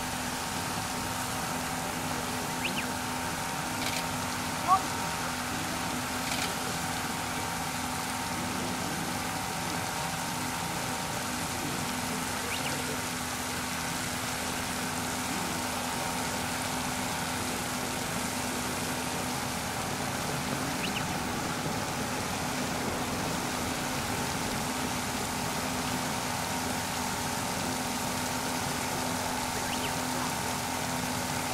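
Fire pump engine running steadily at constant speed, pumping water to two hose lines whose nozzles are spraying full jets. A single short, sharp click stands out about five seconds in, with a few fainter clicks scattered through.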